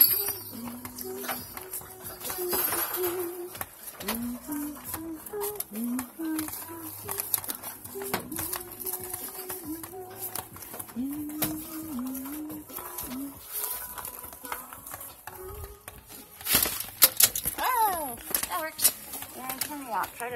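Indistinct, muffled voices with scattered light clicks and taps, and a louder cluster of knocks and handling noise about sixteen to eighteen seconds in.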